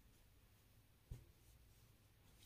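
Near silence with faint rustling of a folded cotton saree being handled, and one soft thump about a second in.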